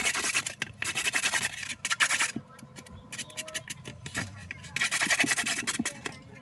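Felt-tip marker scratching over a cardboard toilet-paper tube in rapid back-and-forth colouring strokes. The strokes come in runs: a long run at the start, short bits in the middle, and another run near the end.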